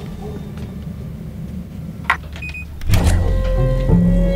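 Commercial soundtrack: low, tense background music. A little past two seconds in come a click and a short high electronic beep. From about three seconds a louder, steady, buzzing tone sounds together with the music.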